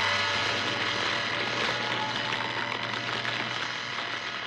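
Cartoon laser-ray sound effect: a steady electronic hum with a low drone underneath, held without change and easing off a little near the end.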